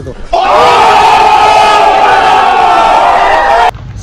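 Many voices shouting together in one long, loud held cry lasting about three seconds, starting and cutting off abruptly like an edited-in sound effect.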